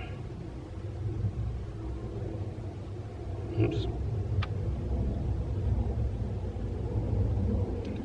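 Steady low outdoor rumble, with one short spoken word about halfway through and a single sharp click soon after.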